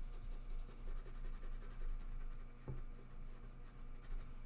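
Prismacolor colored pencil shading on drawing paper: a quiet, continuous scratching of the waxy lead against the paper, with one light tick about two-thirds of the way through.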